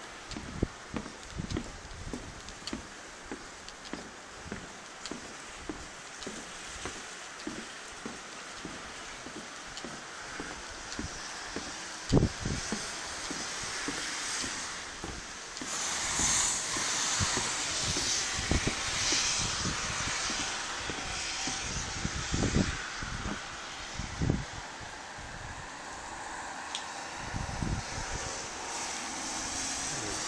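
Footsteps on the wooden plank floor of a covered bridge walkway: a regular series of dull knocks at walking pace. Under them runs a steady rushing noise that grows louder about halfway through.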